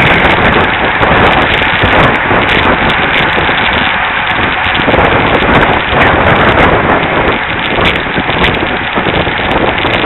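Wind buffeting the microphone of a camera riding on a road bike in a racing pack, a loud, ragged rush mixed with tyre and road noise.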